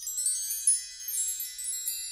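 High, twinkling chimes: many bell-like tones struck in quick succession and left ringing, with nothing low underneath.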